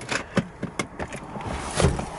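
Several sharp clicks and knocks over a steady rustling, with a heavier knock near the end: hands handling plastic trim and leather seating in a car interior.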